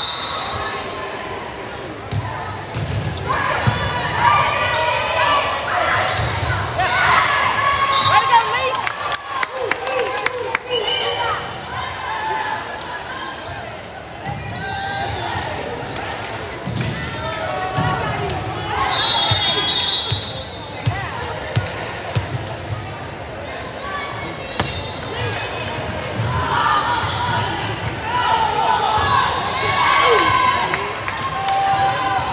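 Indoor volleyball rally in a gym: ball hits and players' and spectators' shouts and cheers, with a cluster of ball contacts about a third of the way in. A short, high referee's whistle sounds about two-thirds through.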